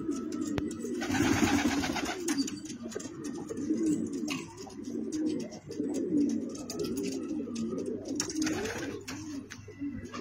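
Domestic pigeons cooing over and over, a low rolling coo repeated all through. A short burst of noise comes about a second in, and another near the end.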